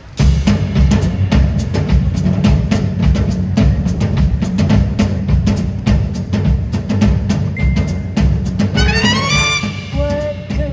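Jazz big band starting a swing tune with a sudden loud entry, the drum kit and bass carrying the beat. Near the end a pitched line rises in several steps.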